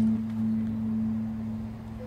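The band's final chord dying away: a single low note rings on and fades slowly, with no new strikes.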